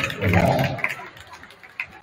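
Players' and spectators' voices shouting in a gym, dying away about a second in, then a few sharp taps in the quieter hall.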